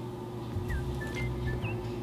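Quiet room tone with a steady hum that stops near the end, and a few faint, short, high chirps.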